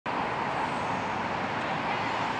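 Steady city traffic noise, an even rush with no distinct events.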